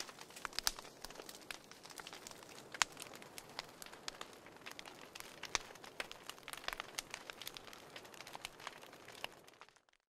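Crackling fireplace fire: irregular pops and snaps over a soft steady hiss, cutting off just before the end.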